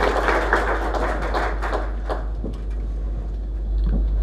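Audience applauding after a talk; the clapping dies away about halfway through, leaving a steady low hum.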